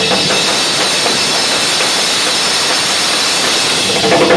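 Drum kit cymbals kept ringing in a continuous loud wash, distorted by the close microphone, with hardly any separate drum hits.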